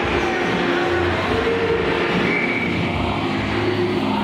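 Steady background din of an indoor ice hockey rink, with no clear single event standing out.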